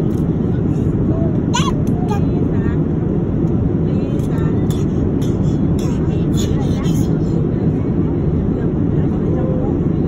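Airliner cabin noise in flight, a steady low rush throughout. Over it come a toddler's high-pitched squeals and babble between about one and seven seconds in.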